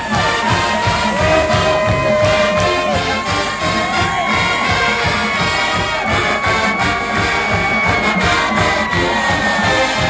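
Marching band playing, with the brass section (trumpets, mellophones, sousaphones) holding long notes over a steady drum beat, and a stadium crowd cheering underneath.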